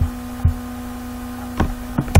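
Steady electrical hum on the recording line, with a few short low clicks: one about half a second in and another near the end.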